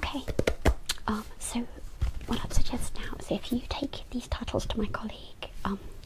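A woman's soft, close-miked whispering, broken into short phrases, with scattered light clicks and taps throughout.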